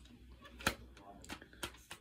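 A few faint, sharp clicks and taps of a plastic CD case being handled while a code card is slipped back inside. The loudest click comes a little after half a second in.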